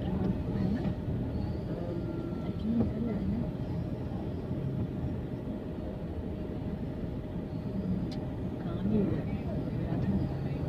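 Busy street ambience: vehicle engines running steadily in slow traffic, with indistinct voices of people close by.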